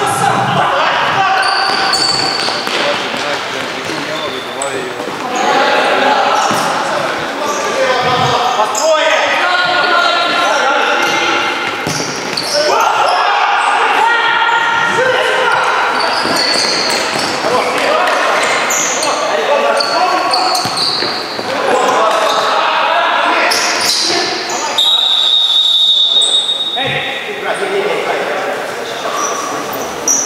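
Futsal match play in an echoing sports hall: players shouting and calling to each other, with the ball being kicked and bouncing on the wooden floor. A single long, steady whistle blast sounds about three-quarters of the way through.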